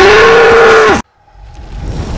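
An orc in a film clip bellowing: a very loud, hoarse roar that rises in pitch, holds, and cuts off abruptly about a second in. A rumbling whoosh then swells up.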